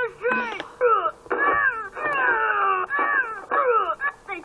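A cartoon playing on a TV in the room: a character's voice letting out a string of high wails that each slide down in pitch.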